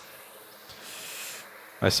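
A pause in a man's talk: a faint steady background hiss, with a soft rush of breath about a second in, before he starts speaking again just before the end.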